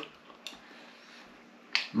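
A metal spoon clinking against a ceramic bowl of chilli: a faint tick about a quarter of the way in and a sharper clink near the end as the spoon goes back into the bowl, followed by a short 'mm' from the man eating.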